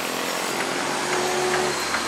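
Outdoor city street noise: a steady wash of traffic, with a motor's steady hum rising slightly about a second in.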